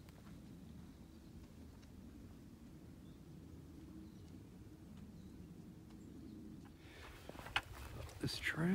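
Quiet woodland ambience: a steady faint low rumble with a few faint chirps. Near the end, footsteps and rustling on dry leaf litter begin.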